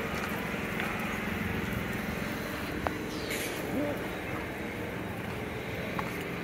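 Steady outdoor street ambience: a continuous hum of traffic with faint voices in the background and a single light click about halfway through.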